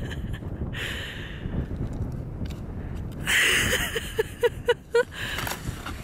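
Wind buffeting the microphone throughout, with a brief loud scrape about three seconds in and a short burst of laughter, several quick 'ha' pulses, between four and five seconds.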